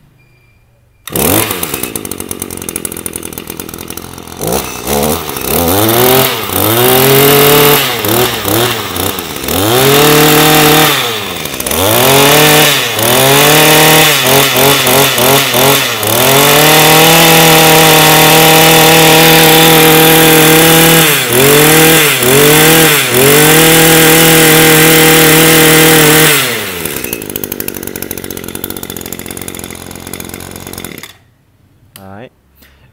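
Echo 26 cc two-stroke brush cutter engine starting about a second in and idling briefly. It is then revved up and down again and again on the throttle trigger, held at high revs for several seconds with a few short blips, and drops back to idle near the end.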